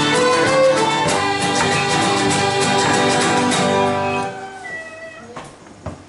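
Irish traditional tune played together on fiddles, piano accordion and guitar, finishing about four seconds in with the last notes fading out. Two sharp knocks follow near the end.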